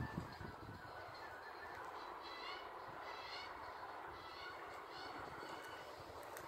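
Faint steady outdoor background noise, with a few faint high chirping calls about two to three and a half seconds in.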